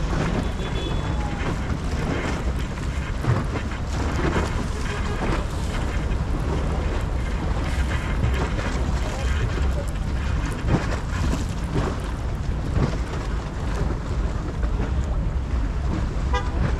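Wind buffeting the microphone over a steady low rumble of boat and water noise at the waterfront.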